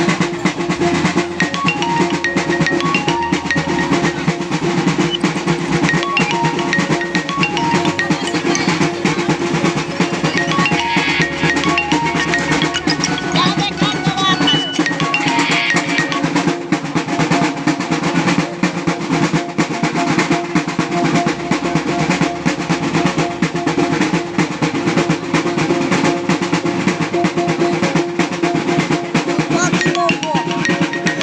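A Maguindanaon gong-and-drum ensemble playing dance music: fast, unbroken drumming under ringing gongs, with a short melodic figure of struck gong notes repeating over a steady low gong ring.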